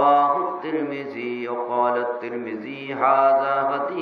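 A man's voice chanting a slow, melodic religious recitation in long held notes with sliding ornaments; a new phrase starts right at the beginning after a short breath pause.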